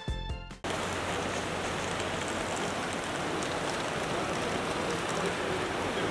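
A music jingle's last notes cut off sharply, followed by a steady, even rushing noise: the ambient hubbub of a busy airport terminal.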